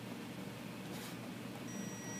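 A short, faint, high-pitched electronic beep near the end from a Snap-on digital torque wrench, signalling that the target torque of 55 foot-pounds has been reached on the flywheel nut. Otherwise quiet room tone.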